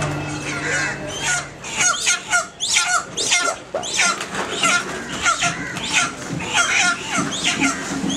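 Live chickens squawking over and over in short, falling calls, about three a second, starting about two seconds in: the alarm of birds held upside down by the legs. A steady low hum runs under the first second and a half.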